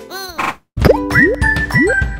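Cartoon sound effects over light children's background music: a short swirling whoosh, a brief cut to silence, then a run of about four quick upward-sliding bloops.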